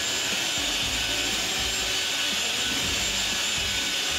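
Hand-held twin-paddle electric mixer running steadily under load, its paddles churning a thick batch of cement adhesive in a bucket.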